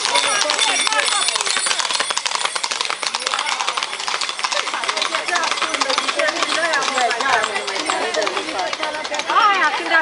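Dense rapid clatter and jingling of horses ridden along a paved street, with steady ringing bell tones at the very start. Onlookers' voices calling out and talking come through more strongly from about halfway.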